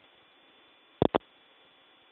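Two sharp static pops, about a sixth of a second apart, in a Bluetooth ear-set microphone recording, over a low steady hiss with a muffled, telephone-like band limit.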